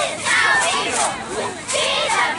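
A squad of young girls shouting a cheer together, many high voices chanting at once.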